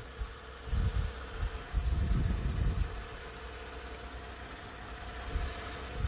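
2010 Lincoln MKS's 3.7-litre V6 idling with the hood open, very quiet and smooth, nearly buried by wind gusting on the microphone during the first few seconds. The quiet, vibration-free idle is taken as the sign of an engine in good condition.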